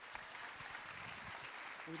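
Congregation applauding, a steady, fairly faint wash of clapping.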